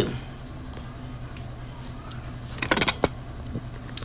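A steady low hum, with a short clatter of clicks and one sharp knock about three quarters of the way through.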